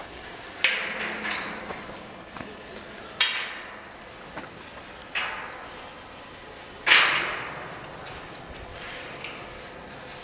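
Brown bear cubs scuffling at the cage bars right against the microphone: five sudden rushing bursts of noise, each fading within about half a second. The loudest comes about seven seconds in.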